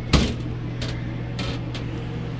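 Handling of a camper's interior bathroom door and footsteps on its floor: a sharp knock just after the start, then a few lighter clicks, over a steady low hum.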